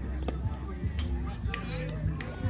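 Spectators talking in the background, with two sharp knocks, one just after the start and one about a second in.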